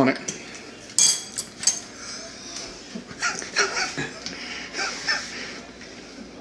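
A man coughing, gasping and making harsh, breathy vocal noises in a string of short bursts as his mouth burns from hot peppers he has just eaten.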